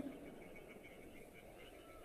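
Near silence: a pause in film dialogue with only faint low background noise.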